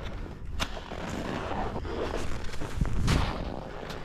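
Skis scraping and carving over packed snow, with wind buffeting the camera microphone as a low rumble. A couple of sharp knocks come through, the loudest and most forceful stretch about three seconds in.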